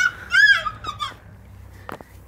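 A young girl's brief, high-pitched, wavering squeal of excitement, then a single sharp click near the end.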